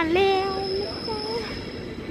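A train pulling into a station, with a steady high-pitched squeal from its wheels or brakes over a low rumble, under a woman's voice.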